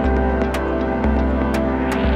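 Background music: sustained electronic tones over a low bass note that changes about once a second, with light ticking percussion.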